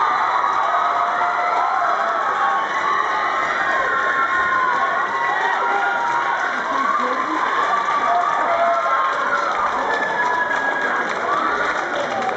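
A crowd cheering and screaming, many high-pitched voices shrieking and whooping over a steady roar, as an award winner is named.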